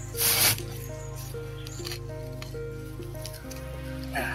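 Background instrumental music, a slow melody over a steady low drone. Near the start a short, loud scraping rasp cuts across it, about half a second long.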